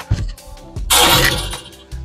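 A basketball strikes the outdoor hoop about a second in: one harsh rattling crash lasting under a second. Background music with a low bass plays underneath.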